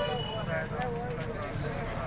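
A man speaking into a handheld microphone, over a steady low rumble.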